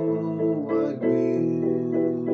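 Electronic keyboard playing slow held chords in a piano voice, with a chord change about a second in.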